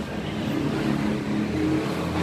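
A steady, low mechanical hum from a running motor, with a constant pitch and growing slightly fuller low down in the second half.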